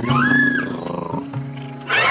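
A sound-designed raptor dinosaur call: one cry that rises, holds and falls, about half a second long, near the start, with another cry beginning at the very end. Background music with sustained low notes plays underneath.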